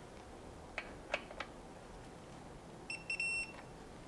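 Digital torque wrench giving a short high beep about three seconds in, signalling that an aluminium oil pan bolt has reached its six foot-pound initial torque. A few light clicks come about a second in.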